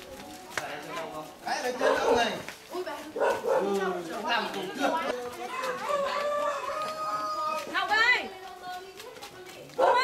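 People's voices talking and calling out, with no clear words.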